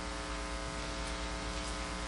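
Steady electrical mains hum with a buzzy row of even overtones over a faint hiss, unchanging throughout.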